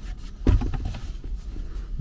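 A cardboard box being handled: its flaps rustle and scrape, with one dull thump about half a second in.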